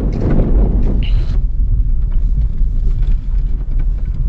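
Car driving, heard from inside the cabin: a steady low rumble of engine and road noise.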